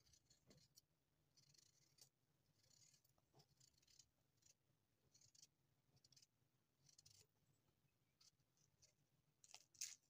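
Faint scraping of a kitchen knife blade peeling the skin off a small baby peach, in short, irregular strokes, with the loudest scrape near the end.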